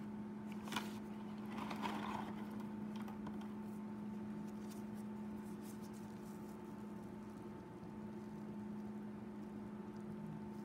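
A steady electrical hum from equipment in a small room, with a single sharp click about a second in and a brief soft rustle just after.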